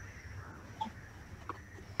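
Faint background noise on a video-call line: a low hum and a thin steady high whine, with a couple of small clicks partway through.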